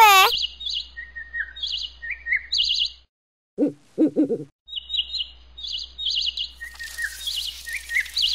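Small birds chirping in short, repeated trilled phrases with lower single notes between them, as forest ambience in an animated cartoon. The chirping breaks off briefly a little past halfway, where a few short, lower-pitched sounds come in, then it resumes.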